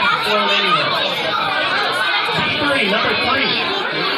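Many children's voices chattering and talking over each other at once, a steady babble with no single voice standing out.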